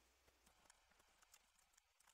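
Near silence, with faint, scattered clicks of typing on a computer keyboard.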